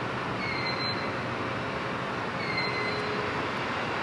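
Steady electrical hiss from the lobby's powered neon lights. A short, faint, high electronic beep sounds twice, about two seconds apart.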